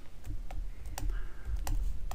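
Stylus writing on a tablet's screen, giving a few light clicks and taps spread through the moment, over a low steady hum.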